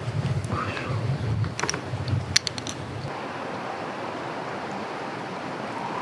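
Outdoor ambience with wind rumbling on the microphone and a few light, ringing metallic clinks about two seconds in. After about three seconds the rumble drops away to a steady, thinner outdoor hiss.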